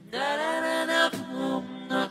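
A cappella singing: a sustained sung vocal phrase that slides up in pitch at the start, then holds notes through the rest.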